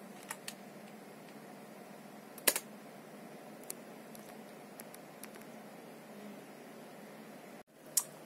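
Steady low hum of a running PC test bench's fans, with a few sharp keyboard clicks, the loudest about two and a half seconds in, as BIOS settings are saved for a reboot. The sound breaks off suddenly near the end.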